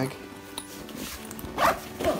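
A zipper on an XD Design Bobby backpack being pulled shut, with a short zip stroke about one and a half seconds in, over faint background music.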